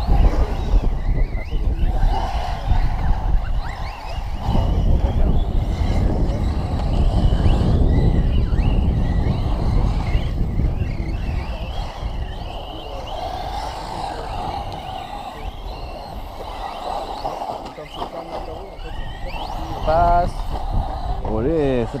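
Wind buffeting the microphone in a loud low rumble, with the motors of battery-electric RC cars whining faintly and rising and falling as they drive around a dirt track.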